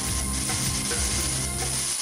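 Crackling electric-spark sound effect with a steady high whine, over a low rumble and dark trailer music.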